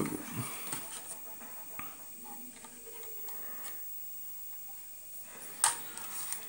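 Faint television sound with speech playing in the background of a small room, and a single sharp knock near the end.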